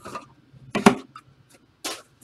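Short rubbing and scraping handling noises, three of them, the loudest a little under a second in, as trading cards and their plastic holders are handled.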